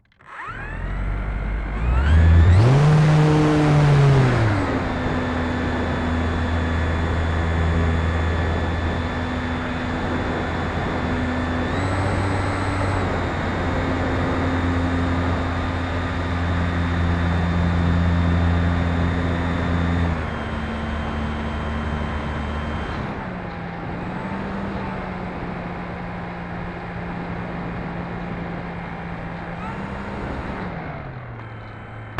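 E-flite Turbo Timber's brushless electric motor and propeller heard from an onboard camera. The motor spools up from a standstill and is loudest, with a rushing noise, during the takeoff run. It then runs at a steady pitch that steps down several times as the throttle is eased back for the landing approach.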